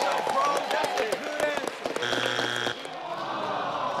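Contestant family and studio audience shouting and clapping in encouragement, then about halfway through the game-show strike buzzer sounds for under a second, a steady harsh tone that cuts off abruptly: the answer is not on the board, the family's third strike. A crowd groan follows.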